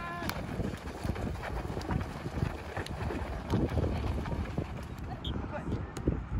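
Youth footballers running and kicking balls on a sandy pitch: scattered thuds of kicks and footsteps over a low rumble, with voices calling out across the field.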